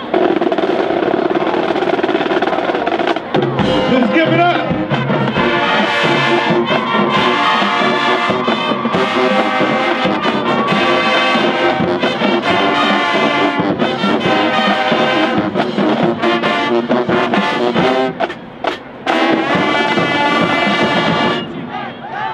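High school marching band playing: brass with sousaphones and drums, loud and steady, with two brief breaks near the end before the music stops.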